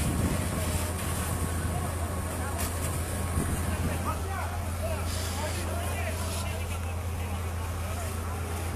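Steady low engine rumble, with distant voices of people calling out over it.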